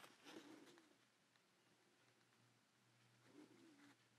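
Near silence, with two faint low calls that rise and fall, one just after the start and one near the end, over a faint steady hum.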